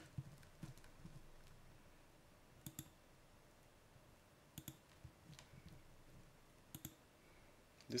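Computer mouse clicking three times at spaced intervals, each a quick pair of clicks, against near-silent room tone; a voice starts right at the end.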